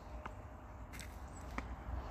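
Faint footsteps on frosty grass and dry leaves: three soft crunches at walking pace over a low steady rumble.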